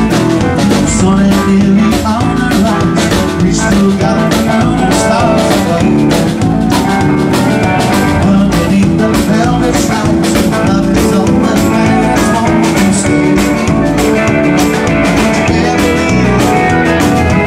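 Live band playing a blues-rock number with electric and acoustic guitars, congas and a drum kit keeping a steady beat, with a lead vocal.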